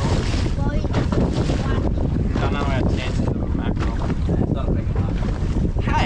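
Steady wind rumble buffeting the microphone, with sea wash and brief indistinct voices.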